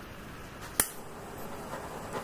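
Handheld butane torch's piezo igniter clicking once, sharply, a little under a second in, then the faint steady hiss of the lit flame starting near the end.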